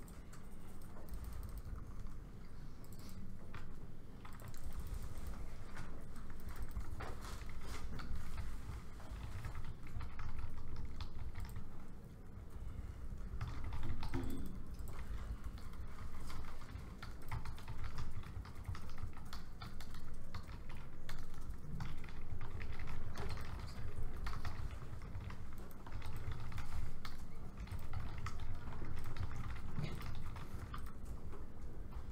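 Laptop keyboard typing: quick, irregular key clicks from several people at once, over a low steady room rumble.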